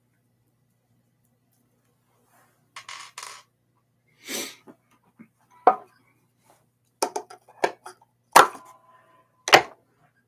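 Knocks, clicks and rustles of an electric guitar being handled and turned over, with small metal clinks of loose screws, starting about three seconds in. The loudest knock comes about eight seconds in and leaves a brief ringing tone.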